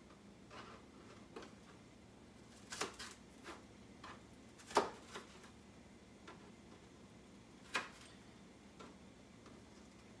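A few sharp knocks of a kitchen knife striking a cutting board as onion and garlic are cut, irregularly spaced, the loudest about halfway through.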